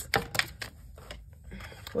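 Tarot cards clicking and tapping as the deck is shuffled by hand: a quick run of sharp clicks in the first half-second, then fainter scattered clicks.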